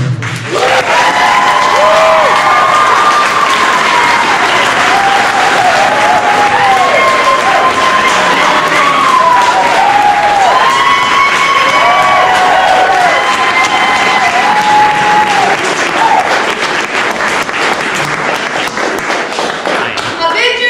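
Wedding guests applauding and cheering, steady clapping with scattered shouted whoops over it.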